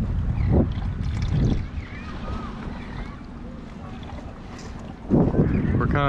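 Wind buffeting the microphone on an open boat, a low rumble loudest in the first second and a half and again about five seconds in, with a quieter stretch between.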